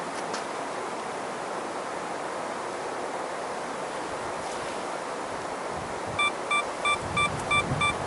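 Steady hiss on a windless, near-still night. About six seconds in comes a quick, even run of about eight short, identical electronic beeps, three or four a second.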